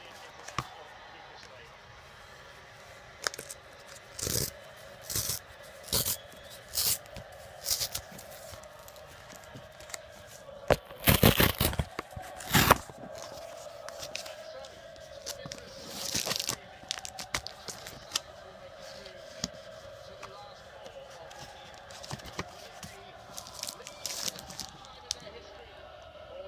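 A paper mailing envelope torn open by hand: a row of short rips, then a longer, loudest tear about eleven seconds in and another a few seconds later, followed by lighter handling and rustling of the contents.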